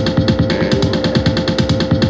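Korg Volca Sample playing a sequenced loop of sampled drum hits in a fast, even rhythm, over a steady held tone.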